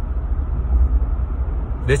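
Steady low rumble of a car in motion, heard from inside the cabin: road and engine noise.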